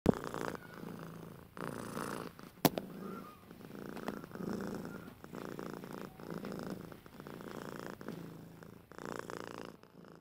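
A cat purring close up, rising and falling about once a second with its breaths. A single sharp click cuts in a little under three seconds in.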